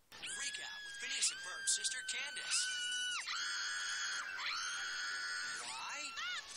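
Animated cartoon girl's screams: several long, high-pitched shrieks held on one pitch, partly overlapping one another.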